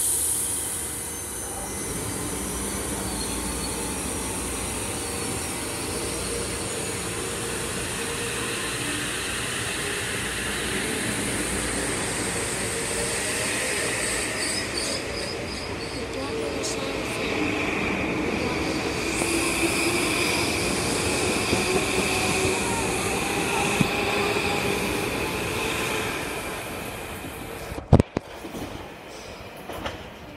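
Metro-North M8 electric multiple-unit train pulling out of the station: a burst of hiss at the start, then the steady running noise of the cars rolling past. A high steady whine comes in about halfway through as it gathers speed. The sound drops off sharply near the end.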